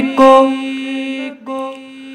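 Male voice singing an Urdu naat. The phrase ends on a short syllable, 'ko', and the held note fades away. A steady drone at the same pitch carries on quietly beneath and after it.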